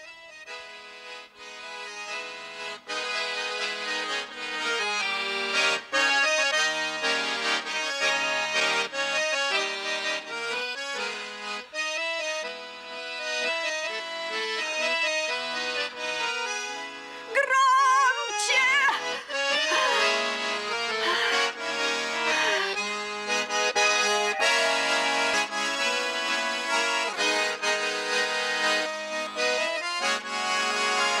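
Accordion playing a melody over sustained chords, with a wavering, trembling passage a little past the middle.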